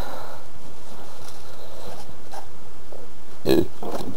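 Steady background hiss between the man's words, with a brief vocal sound from him, like a breath or throat noise, about three and a half seconds in.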